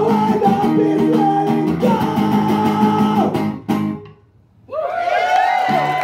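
Solo acoustic guitar strummed in full chords with a man singing, ending abruptly on a final strum about four seconds in. After a short hush, the audience cheers and whoops.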